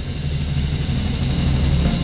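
Computer-rendered orchestral music from Sibelius notation software: a percussion roll, a cymbal hiss over a low drum rumble, swelling louder to a peak near the end and then falling away.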